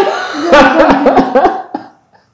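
A man laughing hard in short bursts, with coughing.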